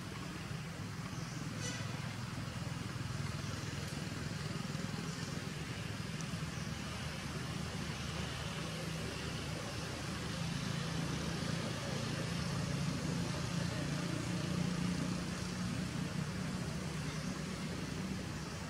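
Steady low rumble over an even hiss of background noise, growing slightly louder in the second half, with a few faint clicks about a second and a half in.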